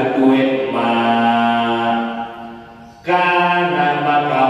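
A man chanting Arabic text from a book in a slow, melodic recitation, holding one long note that fades away between two and three seconds in before his voice comes back strongly just after three seconds.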